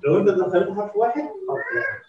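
A person's voice, ending in a drawn-out, higher-pitched call.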